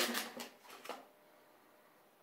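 A few faint papery rustles as the freshly peeled foil seal of a Pringles can is handled, dying away about a second in to near silence.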